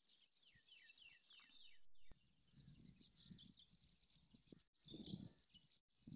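Faint outdoor birdsong: a quick series of short falling chirps in the first two seconds, then scattered chirps, over patches of low rumble from wind or handling.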